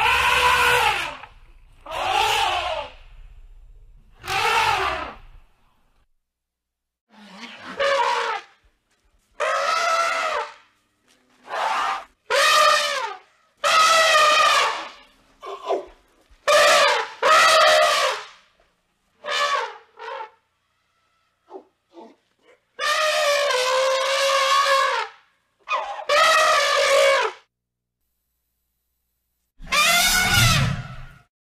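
Elephant trumpeting: a series of a dozen or so loud calls, each lasting from half a second to about two seconds, wavering up and down in pitch, with short silences between them. The longest call, about two seconds, comes in the last third.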